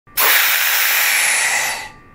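Air rushing back into a glass vacuum chamber as the vacuum is released: a loud, steady hiss that starts suddenly and fades out near the end as the pressure evens out.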